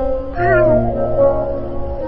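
Background music of sustained held notes, with a cat's meow rising and falling once about half a second in.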